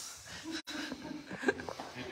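Indistinct, low men's voices in broken fragments, with one sharp click about one and a half seconds in.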